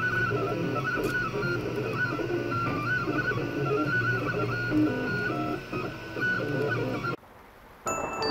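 Anet A3 3D printer's stepper motors whining in shifting, stepped pitches as the print head moves about laying the first layer of a print. The sound cuts off suddenly about seven seconds in.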